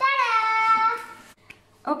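A young girl's voice: one drawn-out, high-pitched exclamation lasting about a second.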